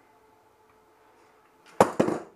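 A sharp knock near the end, running straight into a short breathy vocal sound from the man, over a faint steady hum.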